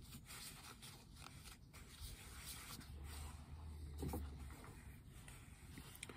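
Faint rustling and light scraping of hands handling a paper tissue and a briar pipe.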